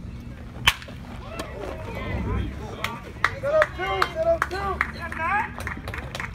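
Sharp crack of a baseball bat hitting the pitched ball, about two-thirds of a second in, for a double. After it come several people yelling and cheering.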